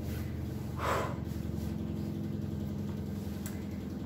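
A short breath out about a second in, over a steady low hum.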